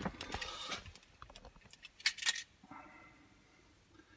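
Light jingling clatter of small handled objects in the first second, then a couple of sharp clicks about two seconds in.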